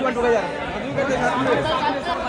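Many overlapping voices chattering and calling out at once: a crowd of photographers shouting directions.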